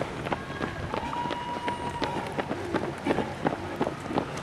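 Many runners' shoes striking an asphalt road in quick, overlapping footfalls as a pack of runners passes close by. A thin steady tone sounds faintly for about a second near the middle.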